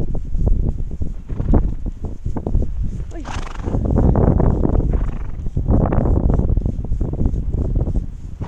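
Wind buffeting the microphone with a heavy rumble, over crunching footsteps in snow. The wind swells in two gusts, about three and a half and six seconds in.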